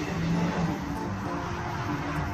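Background music with held, stepping notes, over the road noise of a van passing close by.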